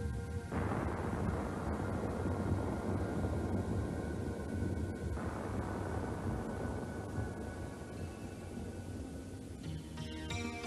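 A passing train rumbling loudly, cutting in suddenly about half a second in, swelling again about five seconds in and easing off near the end, over soft background music.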